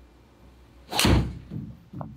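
A golf driver striking a ball off a hitting mat into a golf-simulator screen: one sharp, loud smack about a second in, followed by two softer thuds about half a second apart.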